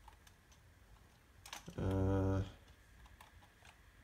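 A few scattered keystrokes on a computer keyboard while code is being typed, with a short wordless hum from a man's voice about two seconds in.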